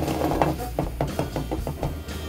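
Wooden spatula stirring a sticky, caramelized pork and bell pepper mixture in a frying pan, with a quick run of light knocks and scrapes of the wood against the pan.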